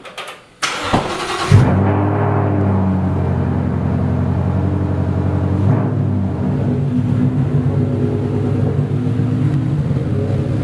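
Ford Mustang engine cranked by the starter and catching with a brief rev about a second and a half in, then idling steadily; the idle note changes slightly about halfway through as the car begins to move out of the garage.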